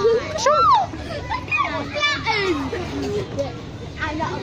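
Young children's voices squealing and calling out in play, with a high rising-and-falling squeal about half a second in.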